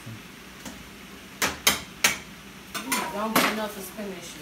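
Pots and utensils clattering at a kitchen stove: three sharp clinks in quick succession about a second and a half in, followed by a short stretch of voice near the end.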